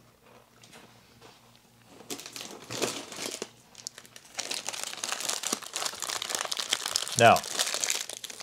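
Crinkling of a clear plastic bag of cookies being lifted and handled, sparse at first and growing denser and louder over the second half.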